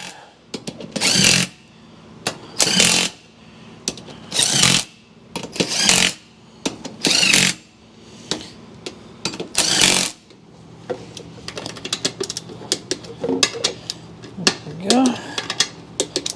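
Cordless impact driver running beadlock ring bolts down in short bursts of under a second, six times, then a string of small metallic clicks and taps as the bolts and hand tools are handled on the ring.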